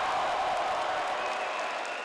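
A large crowd cheering and applauding: a dense, steady din of many voices and clapping that eases slightly near the end.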